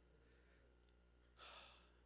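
Near silence in a pause of speech, with one short breath into a handheld microphone about one and a half seconds in.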